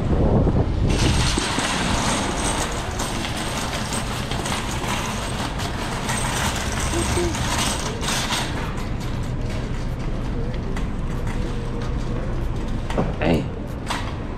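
Wire shopping cart rattling as it is pushed and rolls across a hard store floor, over a steady rush of background noise.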